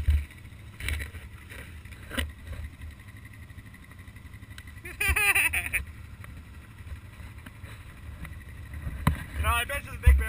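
Can-Am Outlander XMR 1000R's V-twin engine running low in a mud hole, with short surges of throttle about one and two seconds in and again near the end as the quad climbs out. A voice calls out briefly halfway through.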